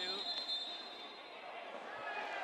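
Referee's whistle: one steady, high blast of about a second, stopping play for a foul, over faint voices in a sports hall.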